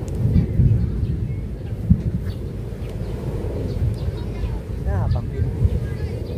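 Wind buffeting the microphone outdoors: a gusty low rumble that swells and drops, strongest in the first second and with a sharp gust about two seconds in. Faint voices can be heard behind it.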